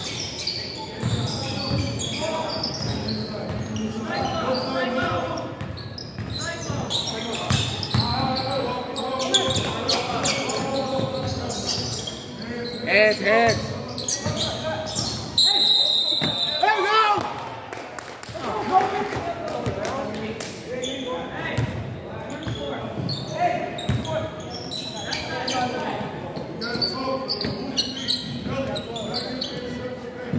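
A basketball bouncing on a hardwood gym floor, with echoing voices from players and spectators in a large hall. A short high whistle blast sounds about halfway through.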